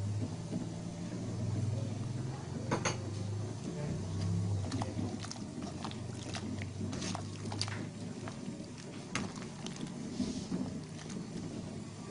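Rambutan simmering in spiced sugar-and-honey syrup in a pot, with scattered bubbling pops and sharp clicks over a steady low hum.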